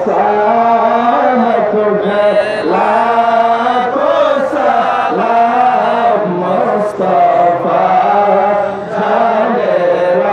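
A man's voice chanting a devotional Islamic song in praise of the Prophet into a handheld microphone, in long, held, wavering notes.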